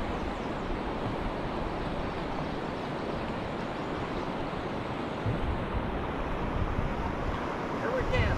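Steady rushing noise of moving river water around a wading angler, with wind buffeting the microphone in low thumps from about five seconds in.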